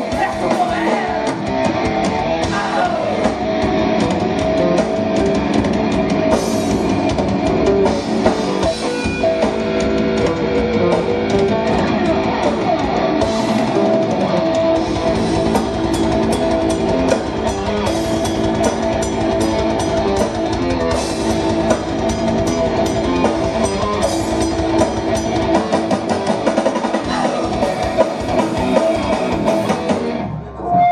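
Live rock band playing: electric guitar, bass guitar and a Tama drum kit, the song stopping at the very end.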